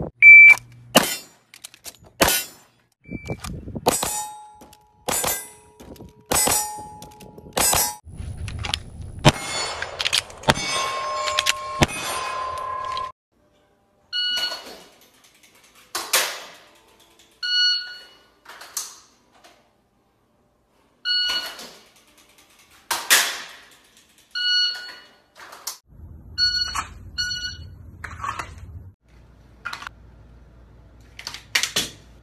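Pistol shots about a second apart, several followed by the ring of steel targets being hit. Later, short electronic beeps from a shot timer every few seconds, between sharp clicks of dry-fire draw and reload practice.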